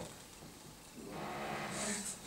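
Quiet pause with room tone. About a second in, a faint, drawn-out low vocal 'uh' starts and carries on to the end.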